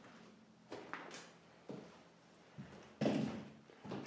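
Footsteps climbing old wooden stairs: a few uneven thuds and knocks, the loudest about three seconds in.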